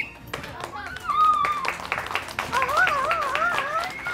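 A small group clapping, with a high cheer that wavers up and down over the applause.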